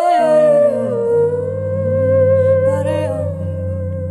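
Theremin and layered looped voice: the lead tone slides down in pitch about a second in and then holds, over a low sustained drone.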